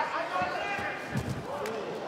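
Low, heavy thuds of two fighters' bodies hitting the cage floor during a throw attempt from the clinch, about a second in, under shouted voices.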